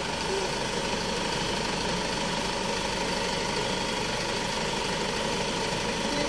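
Mahindra SUV's engine idling steadily.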